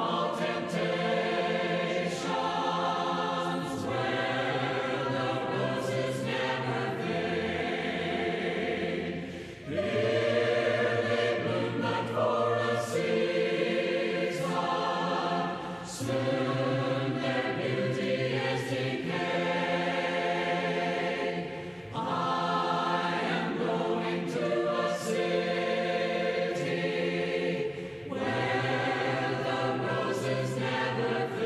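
A choir singing a hymn in long, sustained phrases, with a brief pause between phrases about every six seconds.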